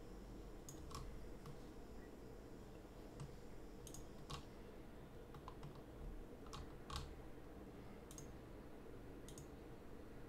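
Faint clicks of a computer mouse, mostly in pairs, every second or two, over a low steady hum.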